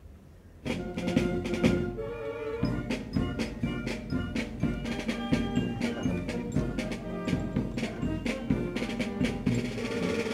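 Military band playing a march on brass and drums, with a steady drumbeat, starting suddenly about half a second in.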